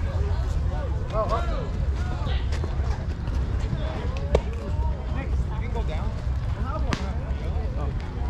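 Distant voices calling out across the field over a steady low rumble of wind on the microphone, with a sharp knock about four seconds in and a crisp click near seven seconds.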